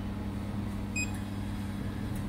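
Steady low electrical hum from a laser cleaning machine, with one short high beep about a second in as its touchscreen ON button is pressed to enable the laser.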